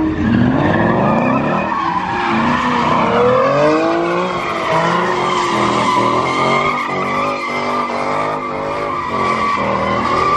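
A car doing donuts: the engine revs rise and fall as the rear tires spin and skid on the pavement. From about halfway through, a steady high tire squeal takes over.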